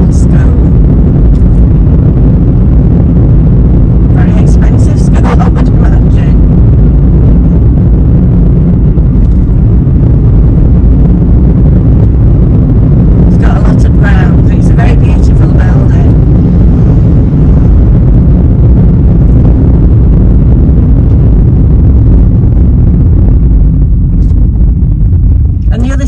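Loud, steady low road and engine rumble inside a moving car's cabin. An indistinct voice is heard briefly twice, about four seconds in and again about fourteen seconds in.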